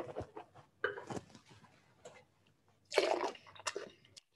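A taster slurping a mouthful of red wine in short noisy draws, pulling air through it to gauge its tannin, then a longer, louder splashy spit into a spittoon near the end.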